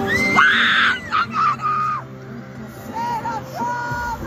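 A concert fan screaming, high-pitched and loud in the first second, then trailing off into shorter cries. Pop music from the performance and the crowd continue underneath.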